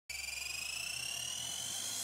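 A high electronic tone made of several pitches that slowly rise together: a synthesized riser sound effect opening a news programme's theme music.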